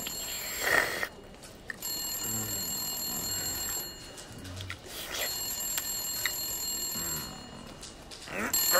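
Old-fashioned desk telephone's bell ringing in repeated bursts of about two seconds with short pauses between, a high, steady ring.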